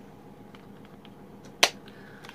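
A single sharp click about one and a half seconds in, over faint handling noise, as a small powder-blush sample is handled and taken out of its packaging.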